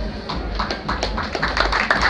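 Small audience applauding: a few scattered claps start shortly after the beginning and quickly thicken into steady applause.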